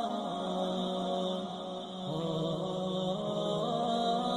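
Chanting: a single voice holding long notes that drop in pitch early on and then climb back by small steps.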